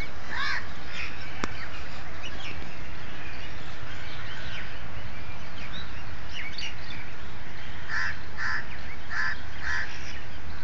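Crows cawing in short harsh calls, one near the start and four in quick succession near the end, with scattered chirps of smaller birds in between over a steady low background rumble. A single sharp click sounds about one and a half seconds in.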